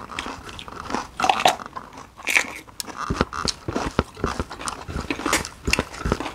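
Close-up chewing and crunching of raw vegetables and rice, many quick irregular crunches and wet mouth clicks.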